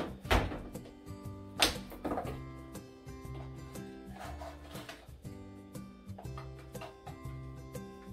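Background music, with a few sharp clicks and knocks of a plastic tub of laundry powder being opened and handled. The loudest comes about a second and a half in.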